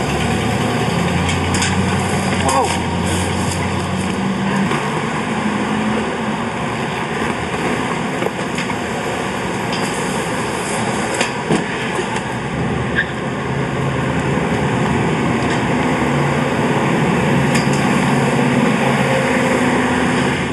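Steady street traffic noise with a low engine hum for the first few seconds. A few sharp knocks come a little past the middle, from soap shoes striking a metal stair handrail and the ground.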